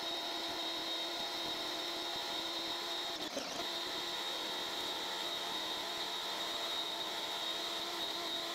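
Toolcy electric pressure washer running continuously with a 3.0 orifice nozzle, its motor and pump giving a steady hum and high whine over the hiss of the water spray. It runs at an even level without pulsing.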